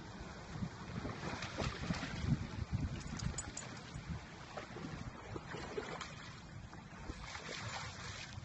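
Shallow water splashing and sloshing as two dogs wade and swim through it, with wind rumbling on the microphone.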